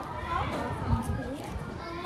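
Background chatter of schoolchildren's voices, softer than the talk on either side.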